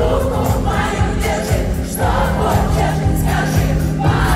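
Live pop concert: loud amplified band music with a singer's vocals, over an arena crowd.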